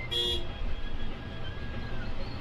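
A single short horn toot from the Volvo 9600 coach as it overtakes another bus, over the steady low rumble of the coach running at highway speed.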